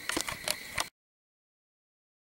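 Crickets chirping in the evening air with a few small clicks, cut off abruptly about a second in, then total silence.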